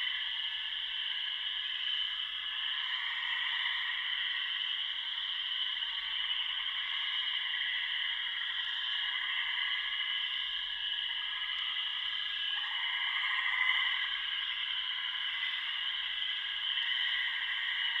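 A steady, high, chirring drone of several stacked bands with no low end, swelling briefly about three-quarters of the way through: a sound-design bed in a film trailer.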